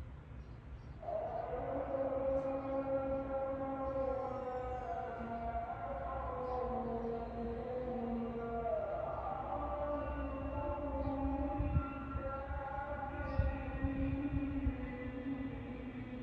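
Long, held melodic notes starting about a second in, stepping between pitches with an occasional slide, over a low rumble of wind on the microphone.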